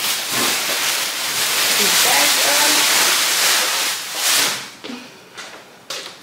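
A loud, steady rushing hiss that lasts about four and a half seconds and then fades, with faint voices underneath near the middle.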